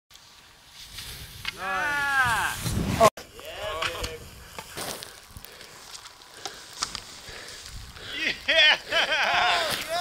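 A person's voice: a long shout that rises and falls in pitch about two seconds in, a shorter call a second later, then an excited "yeah" and whoops near the end.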